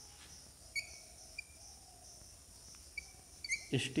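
Chalk writing on a blackboard: a few short, high squeaks, scattered about half a second to a second and a half apart, over a steady high hiss.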